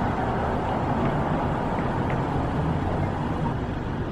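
Car engine idling while stopped: a steady low hum under an even rushing noise.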